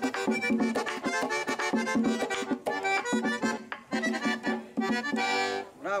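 Accordion playing a fast, rhythmic tune over a tambora drum and sharp percussion strokes, ending on a held chord near the end.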